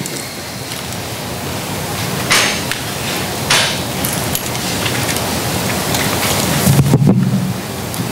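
Rustling, scraping handling noise on a microphone, a steady hiss that grows slowly louder, with two brief louder scrapes in the first half and a low hum swelling near the end.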